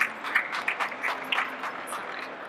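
Audience applauding, a small group clapping with the separate claps distinct rather than merged into a roar.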